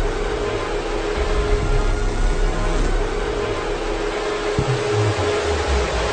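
Cinematic logo-reveal sound effect: a steady rushing noise with a held tone and a low rumble underneath, and a sharp low hit about four and a half seconds in.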